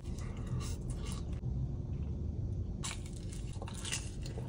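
A bite of cheese pizza being chewed: a few soft, faint mouth noises over a low steady hum inside a car.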